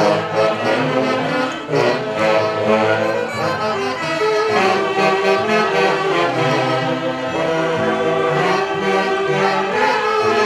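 A live orquesta típica playing tunantada dance music, with saxophones carrying the melody over violins in a steady, continuous strain.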